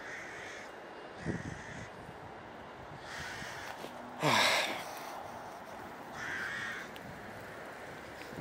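A crow cawing several times, harsh calls about half a second each, the loudest one about four seconds in, over steady background traffic noise.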